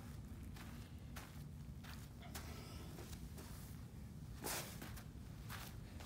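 Faint footfalls and soft thuds on artificial turf, irregular, with a slightly louder thump about four and a half seconds in, over a steady low hum.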